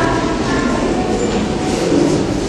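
A steady, loud background din with a few faint, indistinct voice-like fragments and no single sound standing out.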